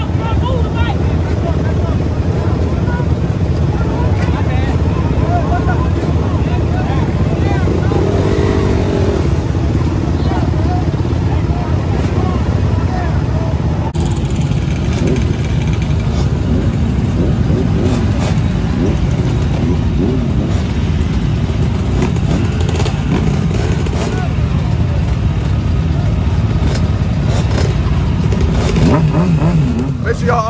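Dirt bike and four-wheeler engines running during a group ride, a heavy, steady low rumble throughout.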